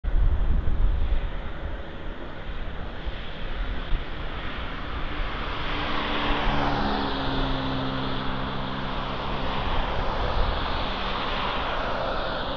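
Road traffic on a city street: a continuous rumble of passing vehicles, with an engine's steady hum standing out for a few seconds in the middle.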